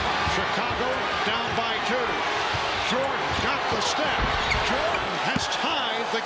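Basketball arena crowd noise during live play, with raised voices rising and falling through it and a ball bouncing on the hardwood court.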